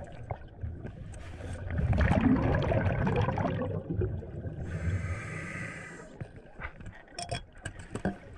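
A scuba diver breathing through a regulator, heard underwater: a loud rush of exhaled bubbles with a low rumble from about two seconds in, then a hissing inhalation through the regulator a little before the five-second mark. Small clicks and knocks run through it.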